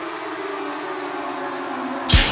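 A sustained, ominous drone from a horror trailer score: two held low tones that slide slowly and steadily down in pitch together, over a faint hiss.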